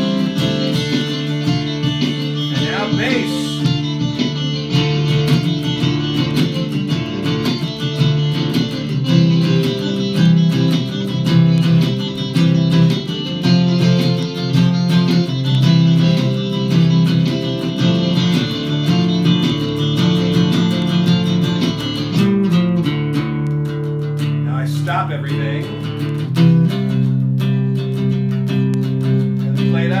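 Double-neck mountain dulcimer with a bass side, played live over its own looped layers from a looper pedal: a steady, rhythmic low bass pattern under higher plucked melody lines. The layered texture thins and shifts about three-quarters of the way through.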